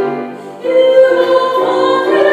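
A female classical singer with piano accompaniment. After a short lull about half a second in, she begins a new phrase on a long held note.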